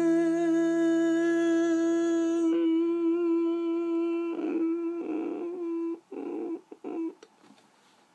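A man humming one long steady note with closed lips as the closing note of a song, the last acoustic guitar chord ringing beneath it for the first two and a half seconds. About four seconds in the hum breaks into short pulses, and it stops about seven seconds in.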